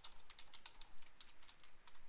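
Typing on a computer keyboard: an irregular run of quiet key clicks.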